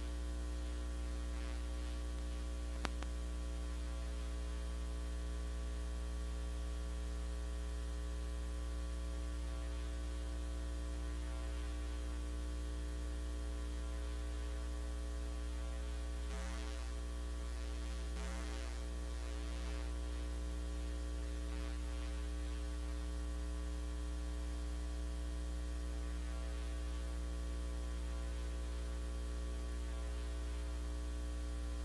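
Steady electrical mains hum with a stack of steady overtones, picked up on the chamber's audio feed while no microphone is in use. A single faint click about three seconds in.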